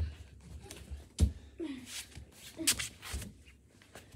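A few scattered thuds on carpeted stairs, the loudest about a second in, with brief children's voice sounds between them.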